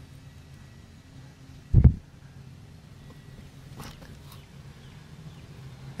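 A single short, low thump just under two seconds in, over a quiet background, with a few faint ticks around four seconds.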